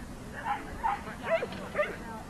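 A dog barking in short, quick calls, four times about half a second apart.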